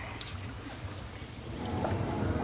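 Water sloshing and lapping around a small boat moving slowly through a mangrove channel, over a steady low rumble; the water noise gets louder near the end.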